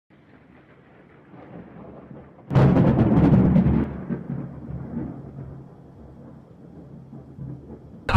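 Logo-animation intro sound effect: a low rumble swells for a couple of seconds, then a sudden heavy boom about two and a half seconds in rings out and fades slowly.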